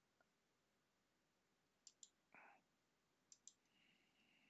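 Near silence broken by faint computer mouse clicks: two quick pairs of clicks, about a second and a half apart.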